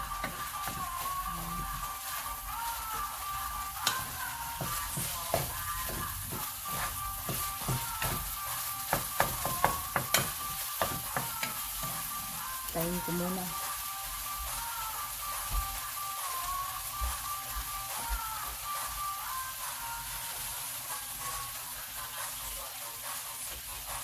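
Ground meat sizzling steadily in a nonstick skillet. For roughly the first half, a wooden spoon stirs it with repeated scrapes and knocks against the pan; after that the spoon rests and only the frying hiss goes on. Faint music with a wavering melody plays underneath.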